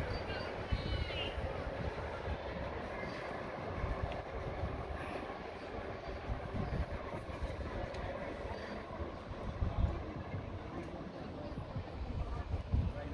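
Outdoor ambience: wind gusting on the microphone over a steady rushing background, with people's voices in the first second or so.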